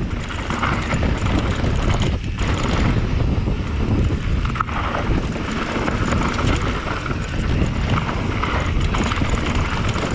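Wind rushing over the camera microphone and a steady rumble of knobby mountain-bike tyres rolling over a dirt and loose-rock trail, with occasional brief clatters from the bike over bumps.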